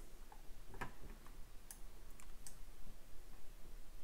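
A few faint, scattered clicks of a computer mouse as the ladder-logic view is scrolled on screen.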